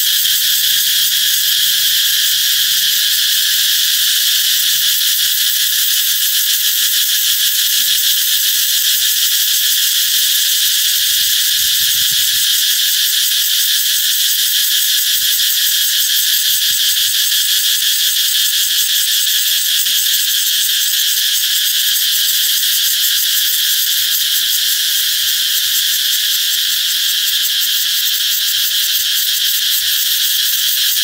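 Cicadas singing in a tree: a loud, continuous, high-pitched buzz that holds steady without a break.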